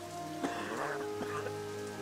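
Background music with long held notes over steady rain.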